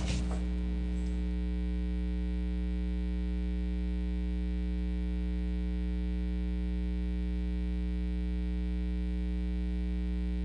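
Steady electrical mains hum: a low, unchanging buzz with many evenly spaced overtones, and no other sound over it.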